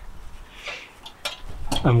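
A few light metallic clinks and a brief scrape as a coil of copper wire is settled on glowing charcoal with a metal hook.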